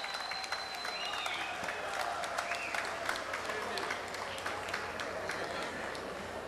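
Audience applauding with dense clapping, greeting the announcement of a prize winner, with a few voices calling out over it in the first few seconds.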